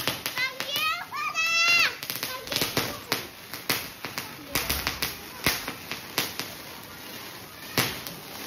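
Children shrieking with excitement in high, sliding cries over the first two seconds, then a spinning spark firework giving off scattered sharp pops and crackles at irregular intervals.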